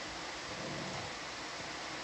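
Steady, even background hiss with no distinct events: the noise floor of the live audio feed.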